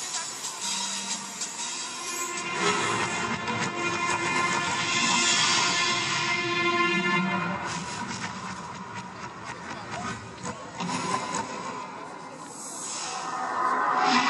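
Soundtrack music of an outdoor projection-mapping light show, swelling and fading, with a quieter dip shortly before the end and a rise again at the close.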